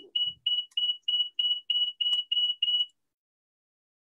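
Rapid electronic beeping on one high pitch, about five short beeps a second, that stops about three seconds in, heard over a video call.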